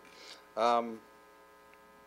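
A man's short hesitant "um", then a faint, steady electrical mains hum with a buzzy edge fills the pause.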